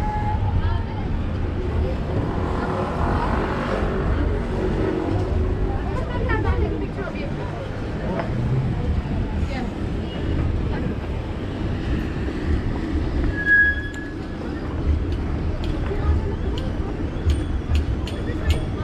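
Busy city street ambience: a steady low rumble of road traffic with passers-by talking nearby, a brief high squeak partway through and a few sharp clicks near the end.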